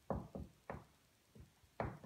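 Dry-erase marker writing on a whiteboard: about five short strokes and taps against the board in two seconds.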